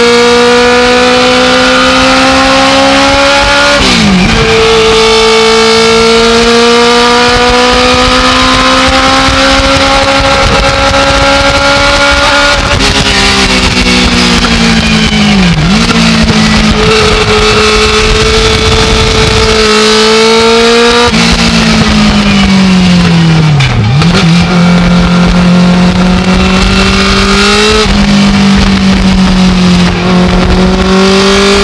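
Legend race car's motorcycle-derived four-cylinder engine heard from inside the cockpit, running hard under load on track. The pitch climbs slowly, sags, and three times dips sharply and recovers.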